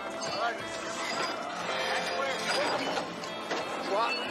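Film soundtrack: voices over music, a dense, steady mix of dialogue and score.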